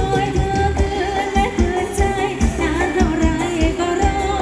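Live band playing Thai ramwong dance music, with a singer's wavering melody over a steady drum beat.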